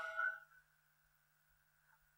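A man's voice trails off in the first half second, then near silence with a faint steady electrical hum.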